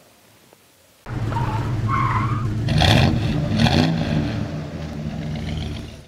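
Car engine revving hard with a short tire squeal, starting suddenly about a second in after near silence; its pitch swings up and down, with two sharp accents near the middle.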